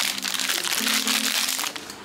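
Plastic wrapper of a Papico ice pop crinkling and crackling as it is opened and pulled off. Background music plays underneath.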